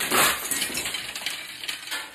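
A sudden loud crash, with clinking pieces settling as it fades over about two seconds.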